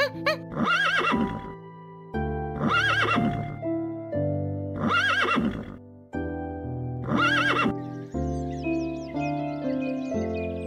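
Horse whinnying four times, each call about a second long and about two seconds apart, over background music. Faint high chirps, like a small bird, come in near the end.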